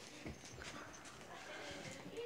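Faint footsteps and soft knocks on a floor, with low voices in the background.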